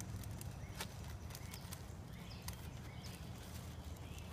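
A clear plastic bag handled with a few sharp crinkles, over a steady low rumble. Short chirping calls repeat every second or so in the background.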